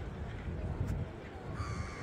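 Outdoor background hum of a busy open space, with a single drawn-out high call starting near the end and falling slightly in pitch.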